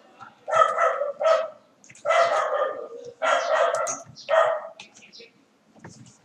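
A short recorded singing voice played back through small computer speakers, thin with no low end. It comes in four brief phrases with gaps between them.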